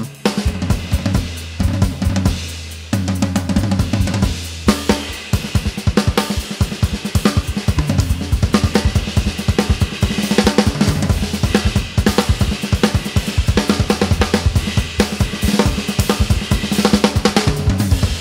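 Gretsch Catalina Club drum kit with mahogany shells, its toms and snare tuned high, being played. Snare, toms, bass drum and cymbals sound under a ride-cymbal wash, sparse at first and then busy and fast from about five seconds in.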